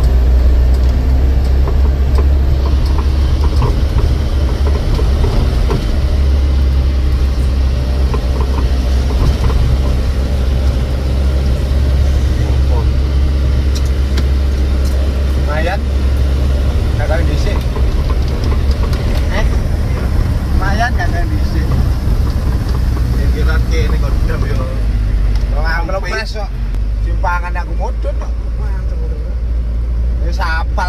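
Steady low rumble of a Mitsubishi Canter-based microbus's engine and road noise, heard from inside the cabin while the bus is under way. In the second half, people in the cabin talk briefly now and then.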